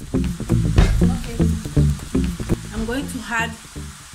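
Background music with a steady beat over the sizzle of ground meat and diced bacon frying in a pan.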